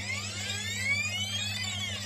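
A whooshing sweep whose phasing rises in pitch, peaks near the end and falls away, over a steady low electrical hum.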